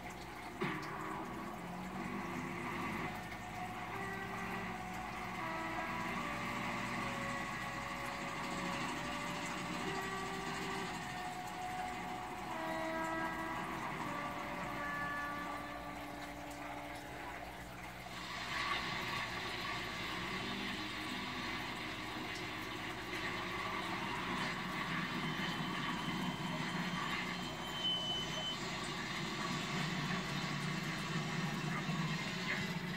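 Film soundtrack playing from a television. First comes a slow melody of held notes; from about 18 seconds in, a steady rushing vehicle and road noise takes over.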